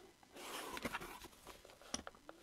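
Cardboard mailer box being handled and opened: a short, quiet scraping rustle of cardboard about a third of a second in, followed by a couple of light taps.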